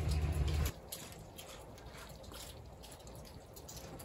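Light rain dripping: scattered drip ticks over a faint steady hiss, after a low rumble that stops within the first second.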